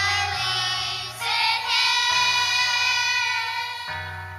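Children's choir singing with instrumental accompaniment, a steady bass line stepping between notes underneath. The voices hold long notes, with a new phrase a little over a second in and one note sustained through most of the second half.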